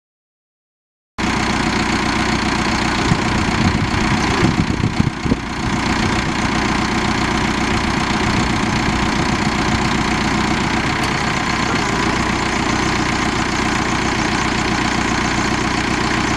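Caterpillar 3054T four-cylinder diesel engine of a Caterpillar 420D backhoe idling steadily, the sound cutting in abruptly about a second in. It goes briefly uneven for a couple of seconds around four seconds in, then settles back to a steady idle.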